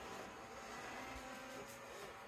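Roomba j7+ robot vacuum running, a faint steady whir with a thin whine.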